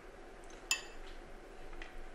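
A metal spoon clinking against a bowl while scooping out filling: one sharp, ringing clink under a second in, and a fainter one near the end.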